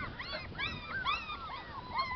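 Border collie puppies, six and a half weeks old, whimpering: a rapid run of short, high, rising-and-falling whines that overlap one another.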